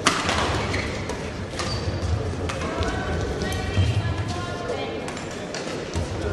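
Sounds of a badminton match in a large echoing sports hall. A sharp crack comes right at the start, a few lighter knocks follow, and voices carry through the hall over a low steady hum.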